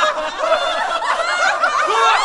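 Several people laughing together at once, a dense overlapping laugh like recorded audience laughter.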